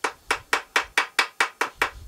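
Steel hammer tapping a steering-head bearing cup into a Yamaha DT400's steel headstock: a quick, even run of about nine light metal-on-metal strikes, roughly five a second, stopping just before the end. These are the last taps that seat the cup.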